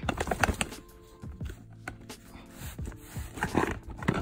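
Plastic golf discs clicking and clattering against one another as they are handled in a stack, busiest in about the first second, with a few more clicks near the end. Quiet background music runs under it.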